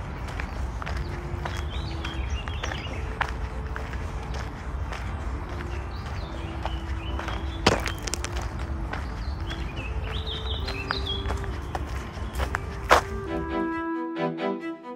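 Footsteps on a sandy park path over a steady low rumble from the walking camera, with short bird chirps now and then and a few sharper clicks.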